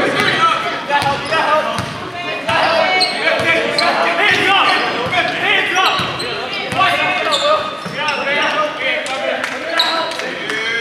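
A basketball being dribbled on a hardwood gym floor in a large gymnasium, with sharp irregular bounces, mixed with indistinct shouting from players, coaches and spectators.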